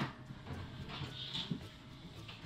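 Low thuds and bumps of a person clambering down from the top of a fridge, with a brief high squeak about a second in.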